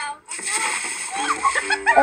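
Water splashing as someone jumps into a backyard pool, with children's voices and shouts over it, heard played back through a TV's speaker.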